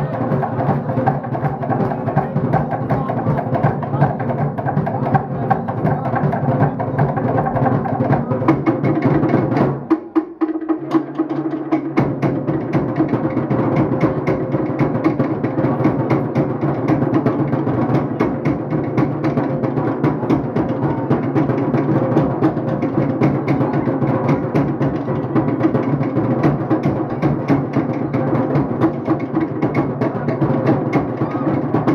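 Fast, driving drum music for a fire-knife dance. The low drums drop out briefly about ten seconds in, then the rhythm carries on.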